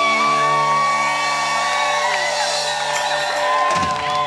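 Live rock band holding a sustained chord on electric guitars while audience members whoop and cheer over it, with a drum hit near the end.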